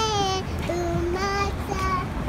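A young girl singing a simple tune in a few high, drawn-out notes, with a low street rumble beneath.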